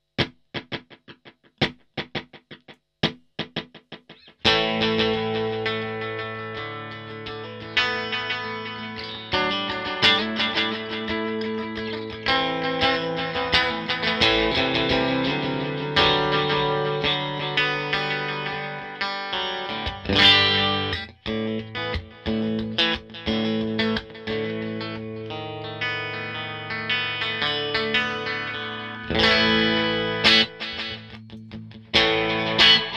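Electric guitar played through a Fender Space Delay pedal into an amp, with delay repeats trailing the notes. A few short, sparse plucks open the passage, then about four seconds in it moves to sustained chords and melodic lines.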